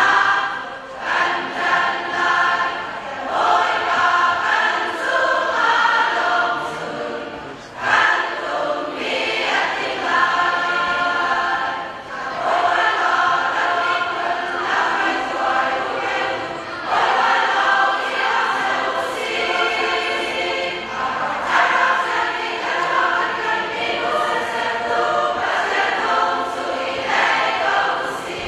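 A very large women's choir singing together in full voice, the sung phrases broken by short breaths about eight and twelve seconds in.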